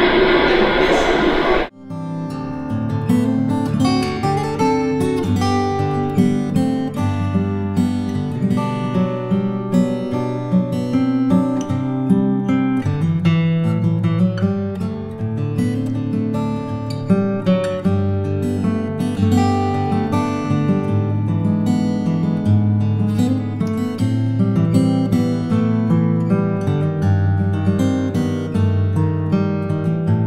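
Hawaiian slack key acoustic guitar music, a plucked and picked melody over a steady bass line. It begins with a sharp cut about two seconds in, replacing muffled audio from the exhibit's video screen.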